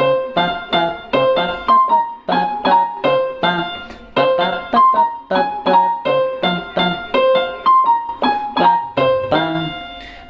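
Portable electronic keyboard in a piano voice, playing a slow single-line melody with one hand: separate notes, about two to three a second, each struck and dying away.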